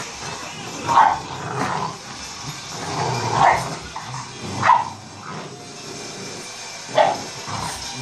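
Bulldog puppies barking in rough play while tugging at a toy: four short barks spread through the stretch, the loudest about a second in and near the end.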